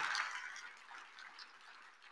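Faint room sound in a hall fading away over the first second into near silence, with a few faint clicks.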